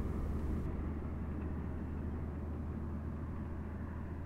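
Steady low rumble of a running vehicle: an even drone with no change in pitch.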